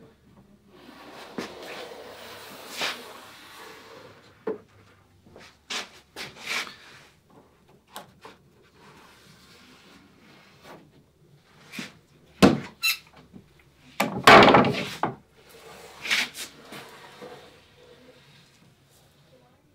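Pencil scratching as a line is traced along the underside of a wooden cap rail, among scattered knocks and rubbing of wood and clamps being handled. The loudest sound is a scrape lasting about a second, some fourteen seconds in.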